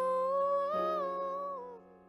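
A young girl's voice holding one long sung note without words, over sustained piano chords. The note wavers slightly and rises a little as a new piano chord comes in, then slides down and fades out near the end.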